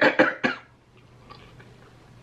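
A woman coughing several times in quick succession, muffled behind her hand, over about the first half second, then falling quiet.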